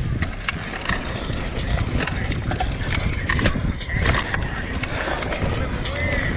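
Mountain bike ridden over a dirt trail, recorded from a rider-mounted action camera: steady wind and rolling rumble with frequent knocks and rattles from the bike over bumps.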